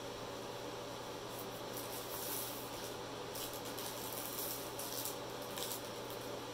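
Soft, intermittent rustling of a diamond-painting canvas's clear plastic cover being handled and smoothed, over a steady low hum and hiss.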